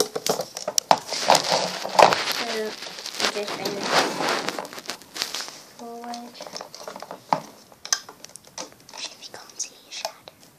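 Close crinkling, rustling and clicking of hands working rubber loom bands on a plastic loom right at the microphone, dense for about five seconds and then sparser, with a couple of brief murmured voice sounds.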